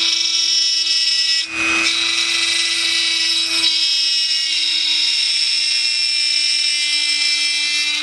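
Dremel rotary tool running at mid speed, a steady high-pitched whine as its bit grinds and melts through a plastic model-kit panel. The sound wavers briefly about one and a half seconds in.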